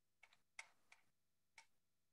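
Near silence broken by four faint, irregularly spaced clicks.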